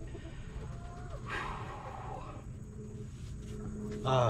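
Quiet outdoor yard ambience with a steady high-pitched insect chirring, and a brief animal call about a second in.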